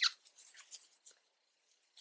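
Faint short scratch and a few light ticks of a metal crochet hook drawing red yarn through a stitch. It is quiet after about a second in.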